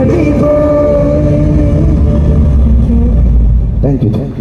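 Loud live band music with heavy, rumbling bass, carrying long held notes.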